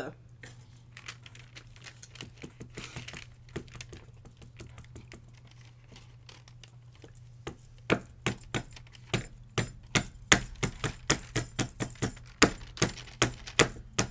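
An ink pad patted over and over onto a wood-mounted rubber stamp to ink it: a run of sharp taps, about three or four a second, starting about eight seconds in, after a stretch of faint handling noises.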